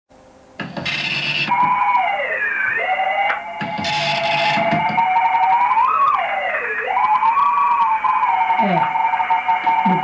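Whistling tones from a shortwave amateur radio transceiver's receiver, sliding down and back up in pitch as the RIT and main tuning knobs are turned across a signal. Two short bursts of rougher, noisier sound break in about one and four seconds in.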